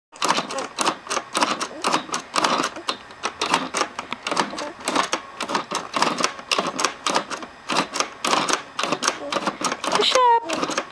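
A plastic spinning lion-mane toy on a baby activity gym being spun by hand, clicking rapidly in repeated bursts, about two bursts a second.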